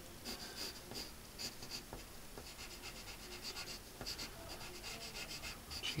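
Colour pencil shading on paper: rapid, short scratchy strokes that thin out in the middle and pick up again near the end.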